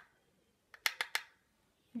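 Four quick, sharp clicks about a second in, from a makeup brush knocking against a bronzer compact as powder is picked up.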